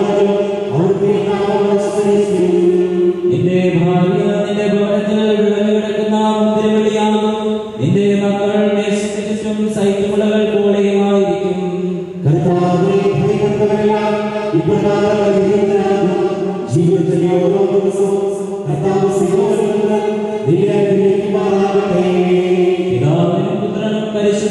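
Voices singing a slow liturgical chant in long held notes, each phrase sliding up into its note, with short breaks between phrases.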